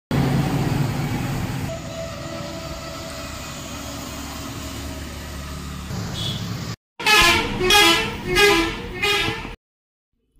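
Traffic noise from a bus passing on the road, loudest at the start and easing off. Near the end, after a brief drop-out, a loud vehicle horn sounds about four wavering notes over two and a half seconds.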